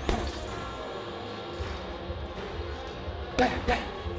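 Gloved punches landing on a heavy punching bag: a quick pair of thuds at the start and another pair near the end, over background music.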